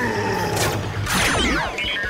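Dubbed sound effects: a whoosh with several falling tones about a second in, then short electronic beeps near the end as the Mystic Morpher flip phone comes into play, over faint background music.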